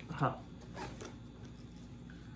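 A short spoken "uh", then a few faint rustles and scratches in the first second as a leafy rose stem is handled and turned in the hands, then quiet room noise.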